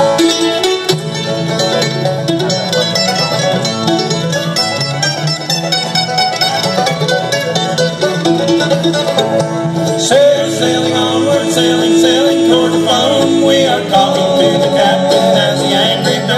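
Bluegrass band playing an instrumental break between vocal choruses: banjo, mandolin, acoustic guitar and electric bass, with fast picked notes throughout. Midway the mandolin steps up to the microphone to take the lead.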